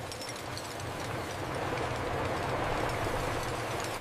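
Steady rumbling noise of a conveyor belt carrying crushed glass cullet, growing slowly a little louder.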